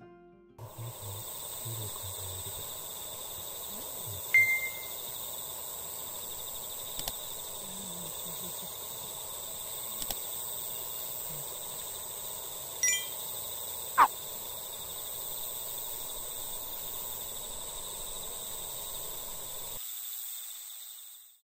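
Steady, high-pitched dusk chorus of crickets, with a few brief sharp calls or clicks over it, the loudest about four and fourteen seconds in.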